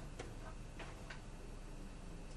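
A few faint, irregularly spaced ticks over a low, steady hum.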